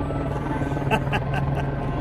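A steady low mechanical hum under outdoor background noise, with a short faint vocal sound about a second in.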